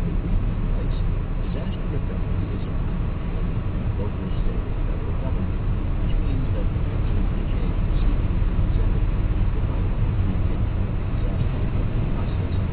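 Steady low rumble with faint, muffled talk underneath, too indistinct to make out.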